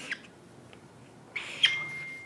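Felt-tip marker drawing on flip-chart paper: a short scratch about one and a half seconds in, then a thin, high, steady squeak near the end.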